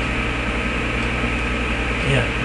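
Steady hiss with a low, constant buzzing hum and no other event: the background noise and electrical hum of a low-quality webcam recording.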